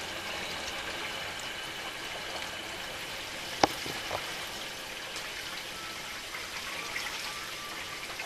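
Steady rush of water filling the second sump of a 20-inch Big Blue whole-house filter housing under line pressure after the inlet valve is opened. A single sharp click sounds a little past halfway, followed by a fainter one.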